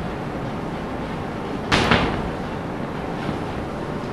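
Chalk writing on a blackboard: a short scratchy stroke just under two seconds in and fainter ones near the end, over steady tape hiss and room noise.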